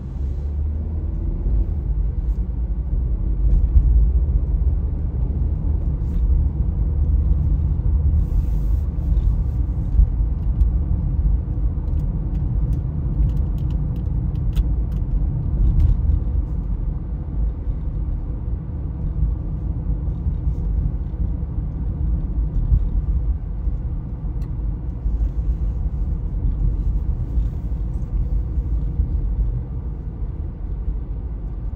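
Steady low rumble of road and engine noise inside a moving car's cabin, heard throughout without any marked change.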